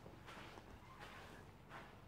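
Near silence: faint room tone in a small stone room.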